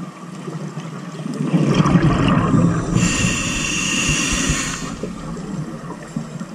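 A scuba diver's breathing through a regulator, heard underwater: a rush of exhaled bubbles starting about a second and a half in, then a steady hiss of inhaled air that stops just before the end.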